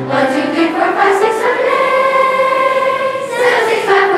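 Children's choir singing a vocal warm-up together. A few quick notes step upward, then the choir holds one long note that arches slightly in pitch before sliding back down near the end.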